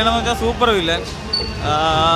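A man talking close into a handheld microphone, with a short pause about a second in before he speaks again.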